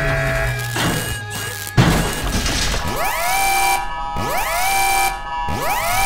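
Animated film soundtrack: score music with a sudden crash about two seconds in, followed by a rising electronic tone that repeats three times, a little over a second apart.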